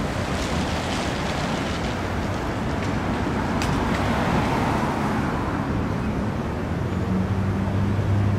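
Outdoor street traffic noise with wind on the microphone: a steady rush that swells around the middle as a vehicle passes, with a low engine hum coming in near the end.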